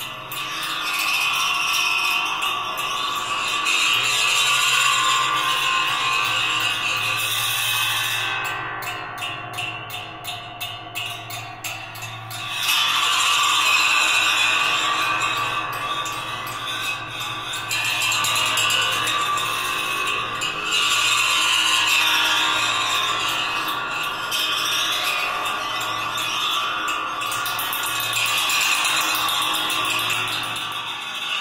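The metal slats of an architectural awning played as percussion, with thin rods drawn across the bars to make sustained metallic ringing and squealing tones that swell and fade. About a third of the way in the sound drops to a quieter, rapid rattling, then swells back up suddenly near the middle.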